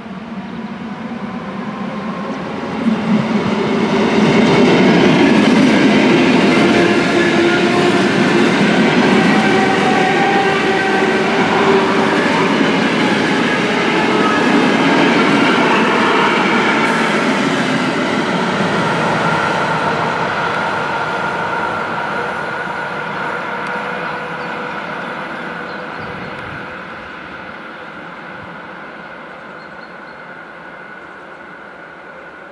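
ER9T electric multiple unit passing close by at speed: the rumble of its wheels and running gear with some steady tones over it, growing loud within the first few seconds, staying loud for about ten seconds, then fading as the train moves away.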